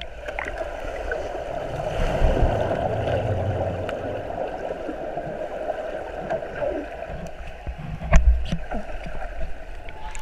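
Swimming-pool water heard underwater through a camera's waterproof housing: a steady, muffled swirl of bubbles and moving water, swelling louder about two seconds in, with a heavy low thump about eight seconds in and a few sharp clicks after it.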